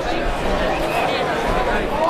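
Spectators' chatter: several voices talking over one another at a steady level, with no clear words.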